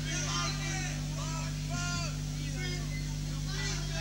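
Steady electric hum from the stage amplification during a pause between songs, with scattered faint voices calling out.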